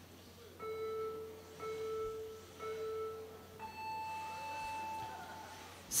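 Start-signal countdown beeps for an RC drift battle: three short beeps of the same pitch about a second apart, then one longer, higher beep that signals the go.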